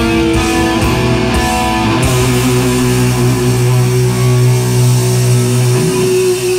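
Live hard rock band playing loud electric guitars: a run of guitar notes, then about two seconds in the band settles onto one long held chord.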